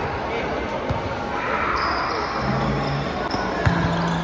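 A basketball bouncing on a hard indoor court floor as it is dribbled, several knocks over the chatter and shouts of a crowd in a large echoing hall. A low steady hum comes in briefly past the middle and again near the end.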